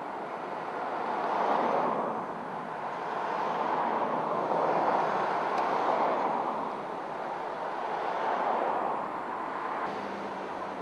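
Road traffic: cars and minivans driving past close by one after another, their tyre and engine noise swelling and fading every few seconds as each goes by.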